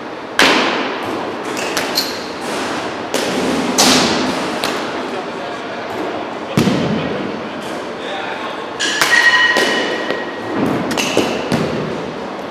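Repeated sharp knocks and thuds echoing in a large indoor batting-cage hall, from baseballs striking bats, netting and walls. One hit about nine seconds in rings for about a second.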